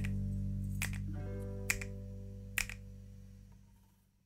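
Background music of held notes with a sharp snap-like click about every second, fading out steadily near the end.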